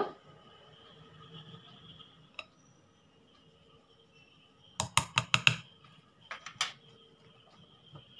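Metal wire whisk and measuring spoon clinking against a glass mixing bowl: a quick run of sharp taps about five seconds in, then a few more, as baking powder is added to cake batter and whisked in.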